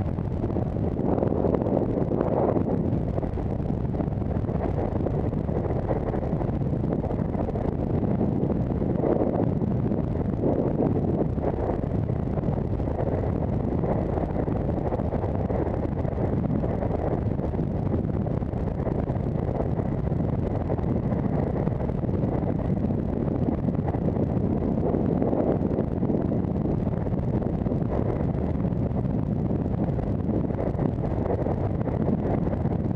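Wind rushing over the microphone of a camera mounted on a moving rowing bike: a steady low rumble.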